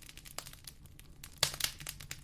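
Soft, irregular crackling and clicking, like crinkling, with a denser burst of louder crackles about one and a half seconds in.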